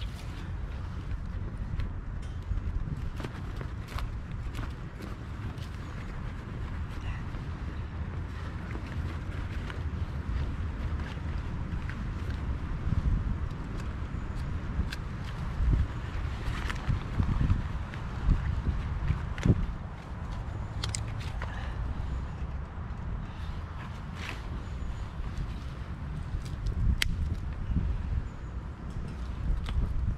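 Wind buffeting the microphone with a low rumble, over scattered sharp crackles and snaps from a small stick fire in a pot stove being fed by hand, a few louder than the rest.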